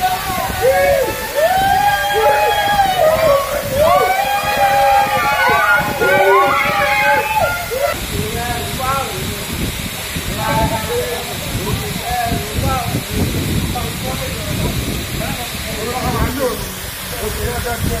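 Waterfall water rushing and splashing down a rock face, steady throughout. Over the first half, loud drawn-out voices with sliding pitch sit over the water; after that the water dominates, with only brief vocal bits.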